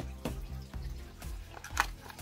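Quiet background music with short clicks and taps from gloved hands handling a cardboard phone box and its packed accessories, one sharper click near the end.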